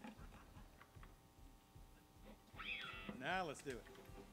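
Quiet pause on a live concert stage between songs: faint voices and small stray stage sounds, with a word spoken near the end.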